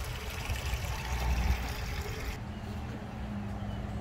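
Water trickling and splashing from garden fountains, cutting off sharply a little past halfway. It leaves a low steady rumble with a faint mechanical hum.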